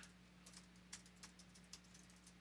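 Faint keystrokes on a computer keyboard, a handful of scattered taps, over a low steady hum.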